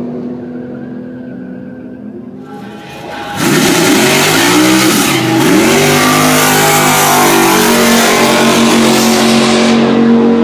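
Drag racing car engine holding a steady idle, then from about three seconds in a very loud full-throttle launch, its pitch sweeping up and down as it accelerates. The sound cuts off suddenly near the end.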